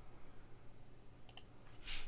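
A couple of faint computer keyboard keystrokes a little over a second in, followed by a brief soft rustle near the end, as code is being edited.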